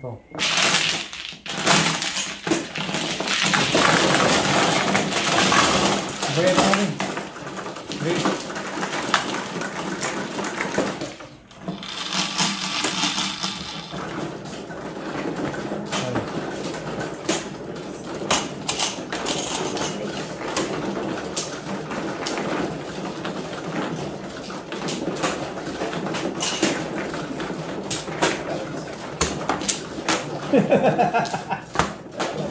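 Plastic mahjong tiles clattering and clicking on an automatic mahjong table, loudest in the first few seconds as the tiles are pushed in to be shuffled, then steady clicking as tiles are taken from the new walls.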